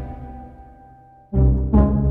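Orchestral cartoon score: a held chord dies away to a hush, then the music comes back in suddenly and loudly just over a second in, heavy in the low end.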